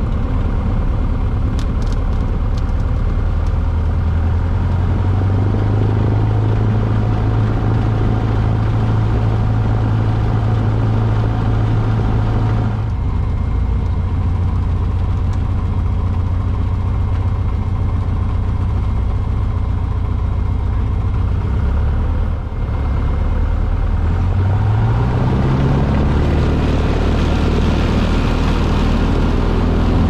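Piston engine and propeller of a small single-engine light aircraft running steadily, heard from inside the cockpit during taxi. About three-quarters of the way through, the engine note rises in pitch and then holds higher.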